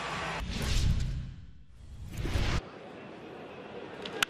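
Swoosh transition sound effect between edited plays: a rush of noise that swells, dips and swells again, then cuts off sharply about two and a half seconds in. Lower, steady ballpark crowd noise follows.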